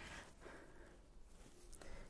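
Near silence: faint background noise, with a few soft ticks near the end.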